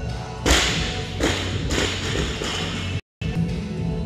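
Barbell loaded with bumper plates dropped from overhead after a snatch onto the gym floor: a loud thud about half a second in, then a second hard bounce and a few smaller rattling bounces as it settles.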